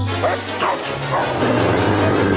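Cartoon background music with a dog barking and yipping over it, several short barks in the first second or so.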